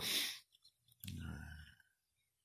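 A short breathy exhale from a man, then a click about a second in and a brief low murmured voice sound.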